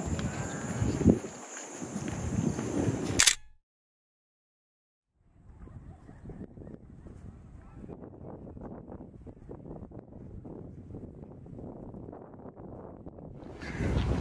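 Outdoor background noise with wind on the microphone, ending in a sharp click about three seconds in. After a second and a half of dead silence comes faint, crackly outdoor background noise.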